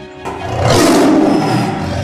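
A tiger roaring once, starting about a quarter second in, loudest in the middle and fading toward the end, over steady music.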